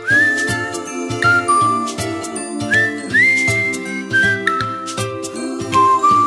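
Background music: a high, whistle-like lead melody that slides up into each note, over chiming chords and a steady light beat.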